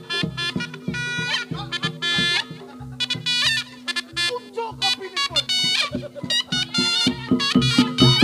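Live Reog Ponorogo gamelan accompaniment: a reedy slompret (shawm) plays a quick melody of short notes over regular drumming and a steady held low tone.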